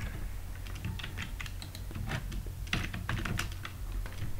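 Computer keyboard typing: quick, irregular keystrokes as a line of PHP code is entered, over a low steady hum.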